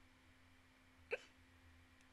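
Near silence with a faint steady hum, broken about a second in by one brief, sharp vocal sound from a woman close to the microphone.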